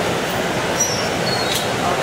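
Steady roar of a gas-fired glory hole, the glassblowing reheating furnace, running hot with its door open, mixed with studio ventilation noise. A couple of faint, brief high-pitched squeaks come about halfway through.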